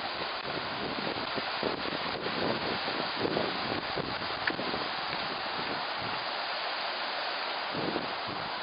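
Steady rush of river water flowing through a stone-walled channel, with wind buffeting the microphone.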